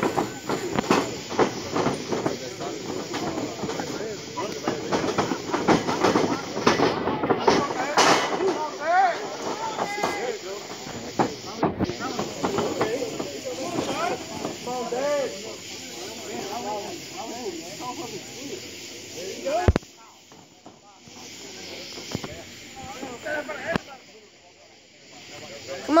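Ringside crowd shouting and calling out over one another, with a few thumps. A sharp thump comes about twenty seconds in, after which the voices fall quieter and sparser.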